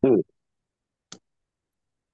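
A short spoken "hmm", then a single brief click just after a second in, with dead silence around it.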